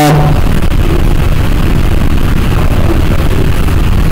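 Loud, steady low rumbling noise from a faulty recording microphone, filling the pause without any speech.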